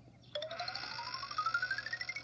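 Children's TV sound effect played through a television speaker: a quick run of short, evenly spaced notes, about ten a second, climbing steadily in pitch. It starts about a third of a second in.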